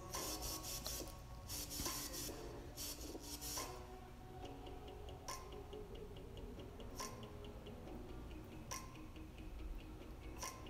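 A makeup brush rubbing against the skin, a few scratchy strokes in the first few seconds. Soft background music with a light ticking beat runs under it and is all that is left for the rest of the time.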